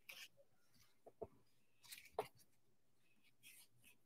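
Near silence with a few faint, short taps and clicks from painting tools being handled on a table.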